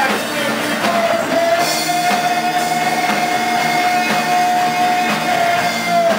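Live punk-blues band playing: electric guitars and drum kit, with one long steady high note held from about a second in.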